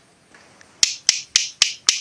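Five sharp clicks in quick, even succession, about four a second, each trailed by a brief high hiss.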